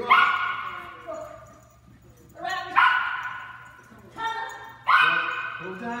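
Small dog barking repeatedly, three loud barks about two seconds apart with smaller ones between, each echoing in a large hall.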